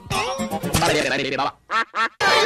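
A man's shouted voice clip run through heavy audio effects, its pitch warped and gliding up and down. It drops out about one and a half seconds in, leaving a few brief, chopped fragments.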